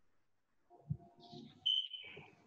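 A dull thump about a second in, then a short high-pitched beep near the end.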